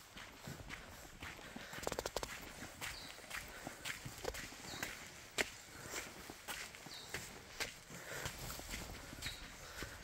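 Footsteps of a person walking at an even pace on a dry dirt and leaf-litter bush track, about two steps a second, with a quick cluster of sharp clicks about two seconds in.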